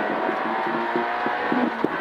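Peugeot 106 N2 rally car's 1.6-litre four-cylinder engine running hard at high revs, heard from inside the cabin, with one short sharp click near the end.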